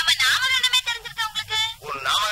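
Speech: a person talking, film dialogue.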